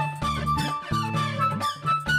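Background music: a bouncy tune of short plucked notes over a repeating bass line and a quick, steady beat.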